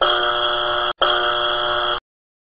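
Two steady buzzer tones, each about a second long with a brief break between them.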